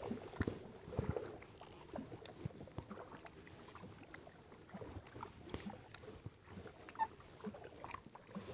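Faint water lapping and trickling along a kayak's hull as it glides, with scattered small ticks and a few soft knocks in the first second or so.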